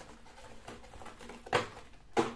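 Light handling noises of craft materials being moved about on a table, with one sharp knock about one and a half seconds in.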